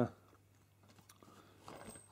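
Faint clicks and handling noise from hands working soft tubing onto a compression fitting in a PC water-cooling loop.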